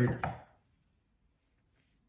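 A voice trails off in the first half second, then near silence.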